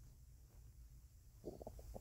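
Near silence: a faint low room rumble, with a few short faint sounds near the end.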